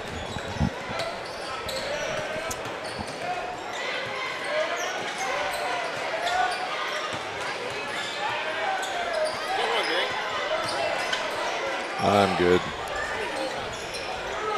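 Gymnasium crowd chatter with a basketball being dribbled on the hardwood court, the bounces heard as scattered knocks. A man's voice calls out briefly near the end.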